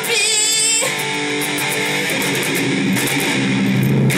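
Electric guitar playing: high wavering notes for about the first second, then low sustained notes.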